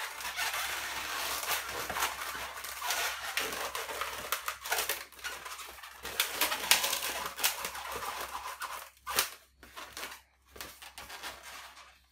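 Inflated latex twisting balloons squeaking and rubbing against each other as hands squeeze and bend a balloon butterfly's wings into shape. The rubbing runs dense and irregular for most of the time, then thins to a few sharper squeaks near the end.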